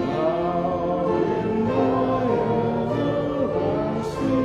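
A hymn sung by a few voices with instrumental accompaniment, in sustained chords that move in steps. A new line begins right at the start, after a brief break.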